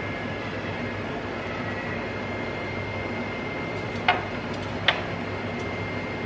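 Air fryer running with a steady fan hum and a thin high whine. Two short clicks about four and five seconds in.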